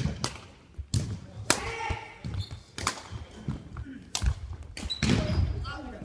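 Badminton rackets striking a shuttlecock in a singles rally, a sharp crack every second or so starting with the serve, echoing in a large gymnasium. Low thuds of players' footwork on the wooden sports-hall floor come between the hits.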